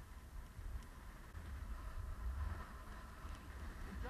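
Skis sliding over packed snow on a downhill run, with wind rumbling and buffeting on the camera's microphone.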